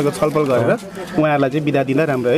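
A man talking, with only a short pause about a second in.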